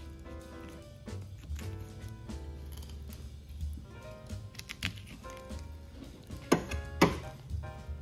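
Background music with held notes over a steady bass. Near the end, two sharp knocks about half a second apart stand out as the loudest sounds.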